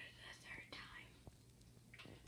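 Near silence with faint whispering in the first second, and a faint click a little after.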